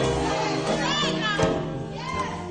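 Live gospel music: held instrumental chords sustain under a pause in the singer's phrase. About a second in, a brief high voice rises and falls.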